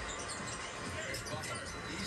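A basketball being dribbled on a hardwood court, low bounces about two a second, in the sound of a televised game.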